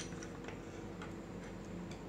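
Light, short ticks about twice a second over a steady low hum.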